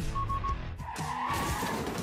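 Car tires squealing in a skid, a wavering screech of about a second starting just under a second in, preceded by three quick high beeps, over background music.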